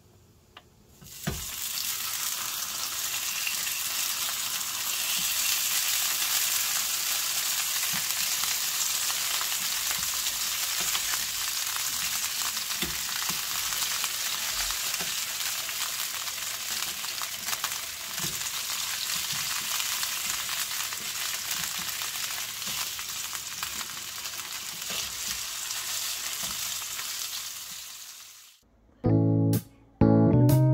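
Sausages frying in hot oil in a nonstick pan: a steady sizzle that starts about a second in as they hit the pan, with a few light clicks of plastic tongs turning them. The sizzle stops shortly before the end.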